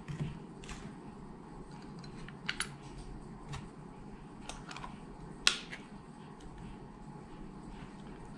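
Small plastic clicks and taps from a DPM 816 handheld coating thickness gauge as a battery is fitted into it: a handful of scattered sharp clicks, the loudest about five and a half seconds in.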